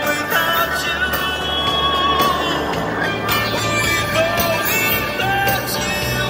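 Music playing, with long held notes over a steady bass line.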